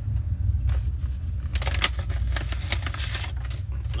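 Motorcycles going by, heard as a steady low engine rumble, with crackles of paper as an envelope and letter are handled.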